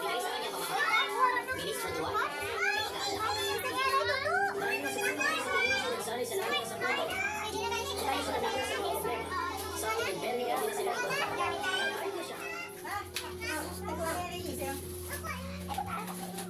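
Lively overlapping chatter of children and adults talking and calling out over one another, with high children's voices standing out.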